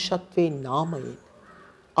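A man's voice speaking a short phrase in the first half, then a quiet pause.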